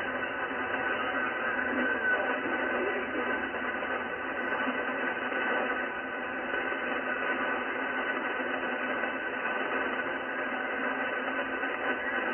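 Icom IC-746PRO HF transceiver's speaker playing the 7.200 MHz lower-sideband channel with no clear voice: steady radio hiss confined to a narrow voice band, with several steady whistling tones running through it.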